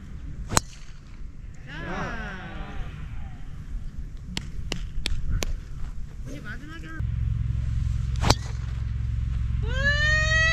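A driver striking a golf ball off the tee: one sharp crack about half a second in, followed by voices and a few short clicks. A steady low rumble comes in about seven seconds in, and another sharp crack sounds shortly after.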